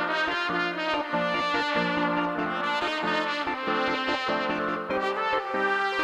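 Two trumpets playing a melody together in held notes, as part of a live band performance.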